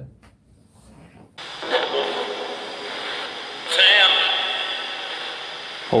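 Handheld RadioShack FM radio hissing with static as it is tuned across stations, used as a spirit box. After a quiet first second or so the static starts suddenly, and a short burst of broadcast sound breaks through it about four seconds in.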